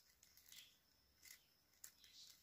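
Faint scraping and clicking of plastic craft wire strands rubbing against each other as they are woven by hand, a few brief scrapes.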